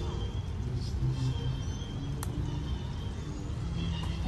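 Faint background music over a steady low rumble, with one sharp click about two seconds in: a putter striking a golf ball.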